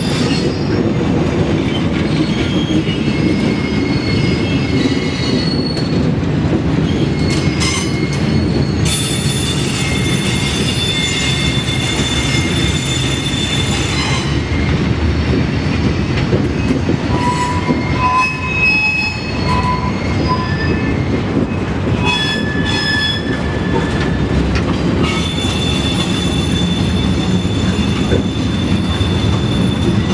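A Norfolk Southern work train of camp cars and maintenance-of-way equipment rolling slowly past, with a steady rumble of railcars. Its steel wheels squeal on the rails in several high tones that come and go.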